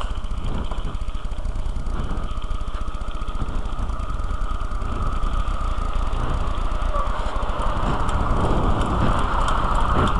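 Steady rumble and hiss of a Kona mountain bike's knobby tyres rolling over gravel, mixed with wind buffeting a cheap helmet-camera microphone. It grows somewhat louder near the end, with scattered small ticks.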